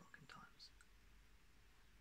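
A softly spoken, almost whispered word at the start, then near silence: room tone with a faint low hum.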